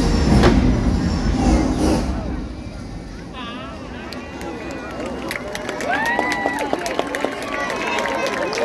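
Fireworks finale: the last shell bursts over loud orchestral show music for about two seconds, then dying away. A large crowd then cheers and whistles, with scattered clapping, many voices at once.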